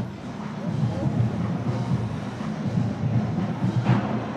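Marching band playing with low brass notes from sousaphones most prominent, mixed with the murmur of a large street crowd.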